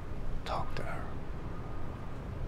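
A person's short whispered sound, about half a second in, heard over low steady room noise.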